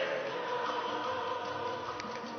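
A choir singing, many voices together holding long notes.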